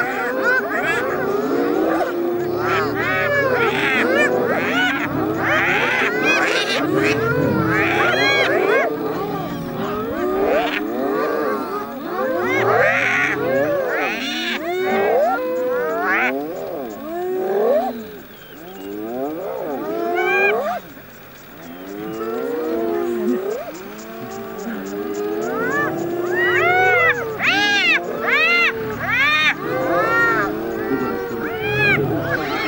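A clan of spotted hyenas calling together: many overlapping calls rising and falling in pitch. They ease off briefly past the middle and build again to a dense run of higher calls near the end.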